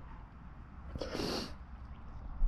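A person's short breathy exhale close to the microphone about a second in, over a steady low rumble.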